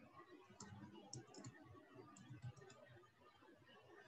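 Near silence with faint computer keyboard clicking: a few short key clicks in two small bursts about a second apart, over a faint low room rumble.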